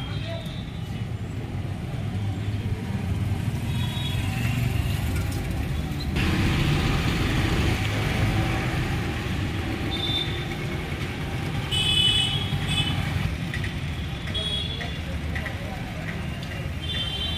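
Street traffic at a busy market: a steady low rumble of passing vehicles with indistinct background voices, swelling louder for a couple of seconds about six seconds in and again near twelve seconds.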